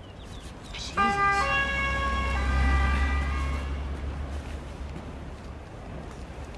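A two-tone emergency siren, most likely a police car's, passes by with a vehicle's low rumble. The siren starts about a second in and steps between its two pitches. It is loudest two to three seconds in and fades away by about four seconds.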